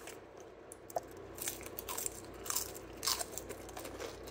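Mouth chewing a bite of Domino's thin-crust cheese pizza, the crisp crust crunching about every half second.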